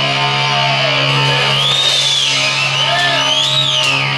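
Live metal band: a low, distorted guitar and bass chord rings on steadily while high guitar tones swoop up and down above it, with no drumbeat.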